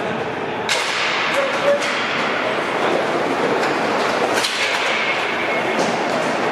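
Hockey game play echoing in a large hall: a steady hiss of skates on the rink surface, broken by about four sharp cracks of sticks and puck, with players' voices calling out.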